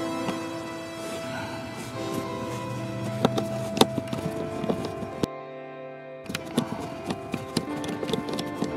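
Background music with sharp, irregular clicks over it from a bit driver unscrewing a small Torx screw. A few clicks come in the middle and a quicker cluster comes near the end. Nearly all sound drops out for about a second just past the middle.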